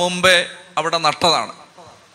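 A man speaking into a microphone, preaching in Malayalam; his voice trails off after about a second and a half.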